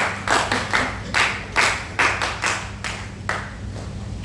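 A small group of people clapping for a felicitation on stage: about a dozen distinct, uneven claps that thin out and stop about three and a half seconds in.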